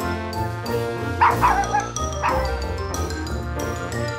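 Two short, high yips from a small dog, a little past a second in, over steady background music.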